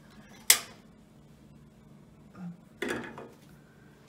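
Metal kitchenware clanking: a sharp clank of a wire whisk or stainless steel saucepan about half a second in, then a softer clatter near three seconds.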